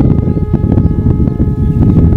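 A steady hum of several held tones over a loud, rough low rumble.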